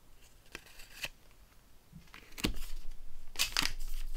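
Handling of trading cards and their plastic pack wrappers: a few light taps as cards are laid down, then the foil-plastic wrappers of Score football card packs crinkling as they are picked up, loudest near the end.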